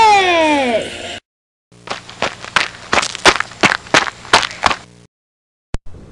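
A voice sliding down in pitch for about a second. Then, after a brief gap, comes a quick run of about ten sharp slaps or knocks, roughly three a second, over a faint low hum, and a single click near the end.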